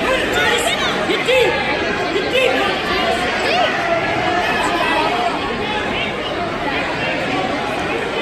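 Crowd chatter: many people talking at once, overlapping voices at a steady level with no single voice standing out.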